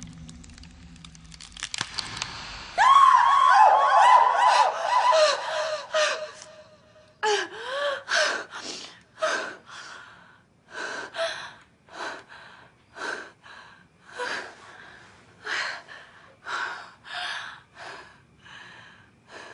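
A high, wavering scream lasting about three seconds, then a woman's heavy, frightened panting and gasping, about one breath a second, as she wakes in fright.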